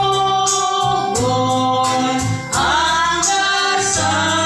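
Hymn sung by a group of voices over a steady instrumental accompaniment with held low bass notes, with a brief dip and a rising sung line about two and a half seconds in.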